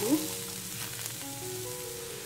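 Freshly diced raw potatoes sizzling steadily in hot oil in a non-stick wok.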